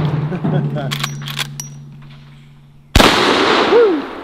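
Marlin 1894 Cowboy Limited lever-action rifle firing .44 Magnum: the echo of one shot dies away, the lever is worked with a quick run of metallic clacks about a second in, and a second sharp shot rings out about three seconds in, echoing off the surrounding woods.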